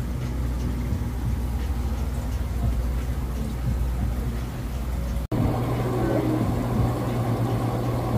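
Steady low mechanical hum of aquarium-shop equipment such as filters, pumps and lighting. It drops out for an instant about five seconds in, then resumes at a slightly higher pitch.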